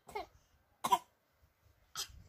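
A baby giving two short coughs about a second apart, the second one louder.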